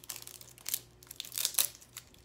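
Product packaging being crinkled and torn open by hand in a few short rustling bursts, the loudest about one and a half seconds in.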